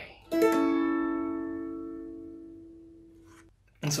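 A Cuban tres strummed once with a pick on an A chord played high on the neck. The doubled strings ring on together and fade away over about three seconds.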